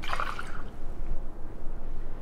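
A margarita poured from a stemmed cocktail glass into a short tumbler holding an ice cube: a brief splash of liquid in the first half second, then fainter.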